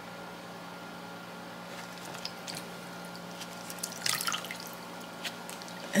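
Liquid hair dye dripping and splashing into a plastic tub of dye, a few scattered drops about two seconds in and a quick cluster of drips around four seconds, over a low steady hum.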